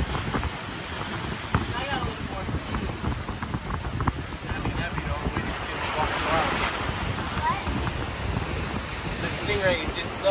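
Wind buffeting the microphone over the steady wash of surf breaking on the jetty and pier below, with faint voices of people talking.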